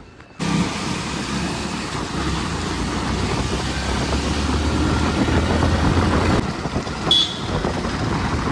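Small commuter motorcycle running along a wet, partly flooded road, its engine a steady low note under continuous wind and wet-road noise. The sound comes in about half a second in, after a brief quiet moment.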